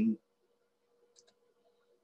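Two faint, short clicks a little over a second in, from the presenter's computer as the lecture slide advances, over a faint steady hum.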